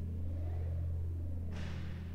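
Steady low drone of a background soundtrack, with a fainter wavering tone above it; about one and a half seconds in, a hiss swells up and fades.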